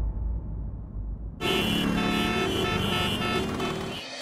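Dramatic soundtrack sting. A low rumble carries over and fades, and then about a second and a half in a loud sustained chord starts suddenly. The chord holds steady and stops just as the picture cuts.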